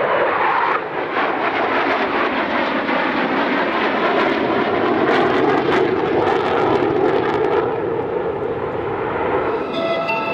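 Twin-engined MiG-29AS fighter's jet engines passing in a flying display: a loud, steady rushing jet noise, with a spell of crackling in the middle.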